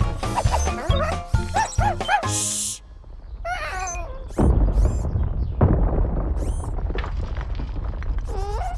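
Bouncy cartoon music with regular beats, then about four seconds in a loud, low, continuing underground rumble with thuds: a cartoon effect of raindrops striking the ground above, heard below as something digging down. A few short, high, wavering whimpers are heard over it.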